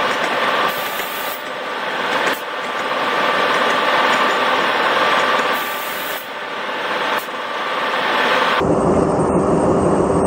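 Steady rushing rail noise of trains on the move, heard from the open doorway of a moving passenger coach as another train runs alongside. Near the end the sound changes abruptly to a deeper rumble with a thin high whine.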